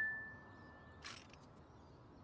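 A single high note from a toy xylophone ringing out and fading away, followed by a brief faint noise about a second in.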